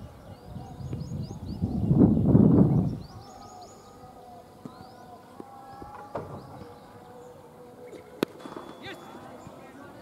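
Open-air ambience at a cricket ground: birds chirping repeatedly, with faint voices, and a loud low rumble of wind on the microphone lasting about a second and a half, two seconds in. A faint knock comes around six seconds in and a single sharp click about two seconds later.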